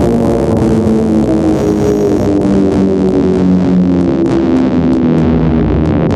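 Electronic minimal music: held synthesizer notes over a low bass line, with short percussive ticks coming in during the second half.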